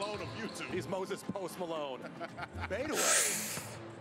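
Quieter voices from the basketball video's own audio playing through, then a short rushing hiss about three seconds in.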